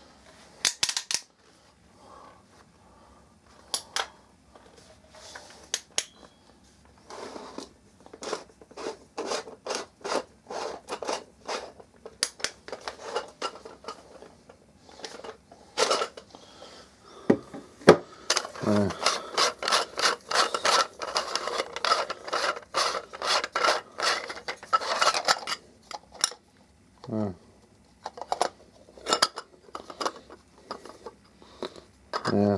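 Irregular clicks, rustles and crinkles of plastic packaging and tool parts being handled, densest in a long stretch after the middle.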